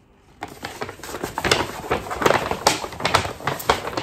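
Paper rustling and crinkling as printed wrapping paper is handled and pulled open. A dense run of crackles starts about half a second in.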